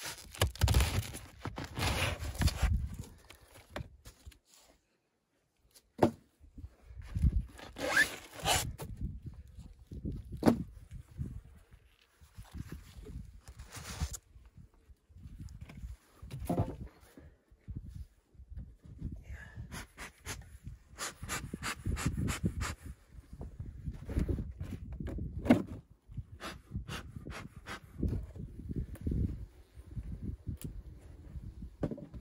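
Handling noise as parts of a polystyrene beehive are lifted off and set down: rustling, scraping and knocks, with the bee suit rustling close by and runs of quick clicks about twenty seconds in.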